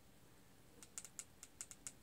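A quick run of about eight light clicks, starting about a second in: Fire TV Stick remote buttons being pressed to change the fast-forward speed.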